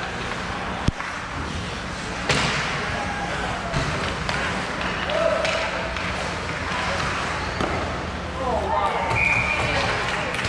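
Ice hockey game in play: knocks of sticks and puck, with one sharp bang about two seconds in, over a low steady rink hum. Voices call out twice, around the middle and near the end.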